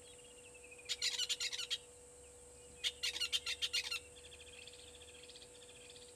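A bird calling in two loud bursts of rapid repeated notes, each about a second long, followed by a softer, quicker trill.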